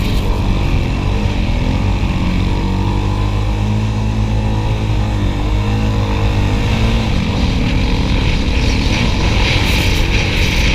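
Dirt bike engine running hard under the rider, its pitch rising and falling as the throttle opens and eases over the dune. A rushing hiss grows near the end.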